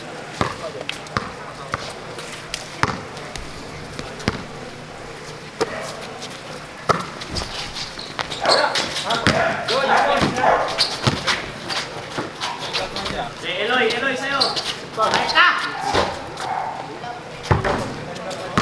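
Basketball being dribbled on an outdoor hard court, single bounces about a second or so apart. Players shout to each other from about eight seconds in.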